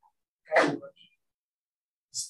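A single short, loud sneeze about half a second in.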